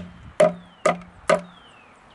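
Small hammer striking a wooden beehive box, driving in a nail: sharp knocks about twice a second, each with a short ring, stopping about a second and a half in.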